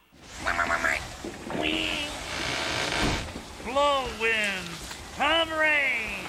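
Staged storm noise: a steady rush of wind and rain on the street set, with short vocal cries over it that arch up and fall in pitch, the loudest two in the second half.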